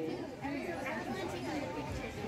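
Quiet background chatter: several people talking at once, with no single voice up front.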